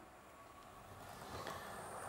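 Near silence, then a faint, steady running sound from the Hornby Class 395 model train on its track, fading in and growing slowly louder through the second half.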